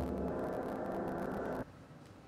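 Large gong ringing in a steady, shimmering drone of many overtones, cut off abruptly about a second and a half in.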